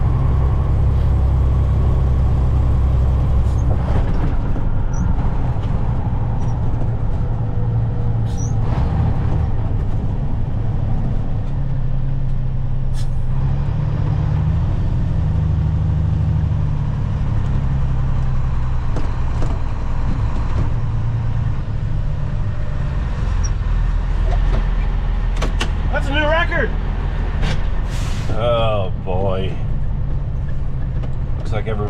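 Semi truck's engine running steadily, heard from inside the cab, its pitch shifting up and down around the middle as the truck changes speed. Short bursts of a voice come near the end.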